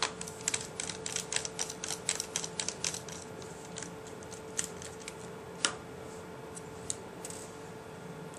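Plastic screen bezel of a Dell Latitude 2100 netbook pressed onto the display lid, its snap clips catching as a quick run of small plastic clicks for about three seconds, then a few single clicks further apart.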